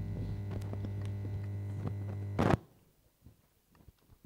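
A steady low electrical hum from the church sound system after the hymn ends. About two and a half seconds in it stops with a short thump, and near silence follows.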